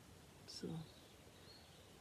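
Near silence: one short spoken word, then a faint, brief, high whistled note from a distant bird about a second and a half in.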